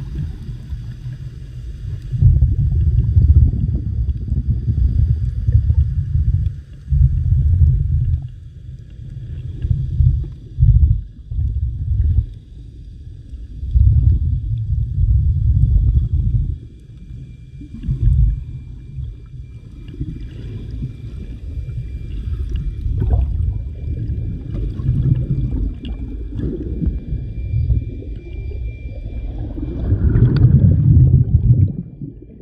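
Muffled low rumble of water moving against an underwater camera, surging and easing every few seconds, with a faint steady high tone through the second half.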